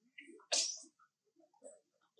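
A single sudden, sharp, hissy burst about half a second in, the loudest thing here, among faint, scattered short sounds.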